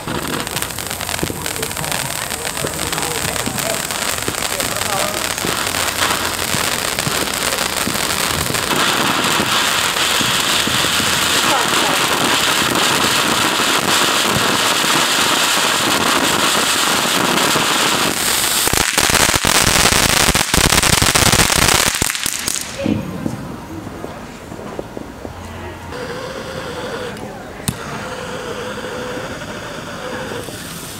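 Ground fountain firework spraying sparks: a steady hiss that builds, turns to dense crackling that is loudest near the finish, and cuts off abruptly about 22 seconds in.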